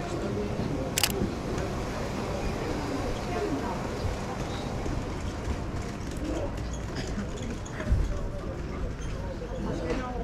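Canon 5D Mark IV DSLR shutter clicking once, about a second in, over the chatter of passers-by in a busy street market. A dull low thump comes near the end.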